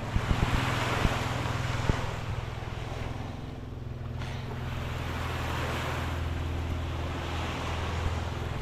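Small waves washing onto a sandy beach, the surf swelling and fading every few seconds, with wind on the microphone. A few sharp knocks come in the first two seconds, and a steady low hum runs underneath.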